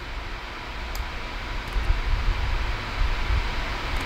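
Steady fan-like hiss over a low rumble, slowly growing louder, with a few faint clicks.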